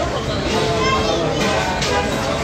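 Background chatter of several voices, children's among them, with music faintly underneath.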